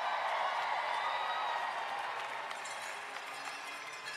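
Crowd applauding and cheering, loudest at the start and slowly dying away.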